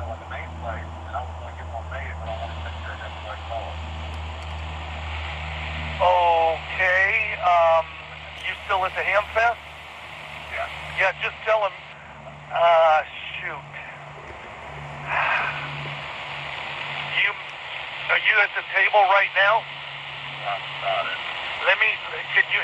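A distant, thin voice coming through a handheld 2-meter transceiver's speaker in bursts of talk, over a steady radio hiss.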